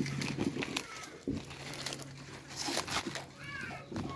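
Leopard tortoises chewing and tearing mulberry leaves: soft, irregular crunching and leaf clicks.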